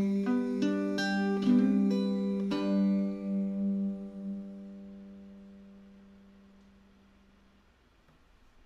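Gretsch archtop guitar playing the closing notes of a song: a handful of picked notes over a held chord in the first three seconds, then the final chord rings out and fades away to near silence.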